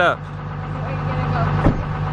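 Car engine idling steadily, heard from inside the cabin, with one short knock near the end.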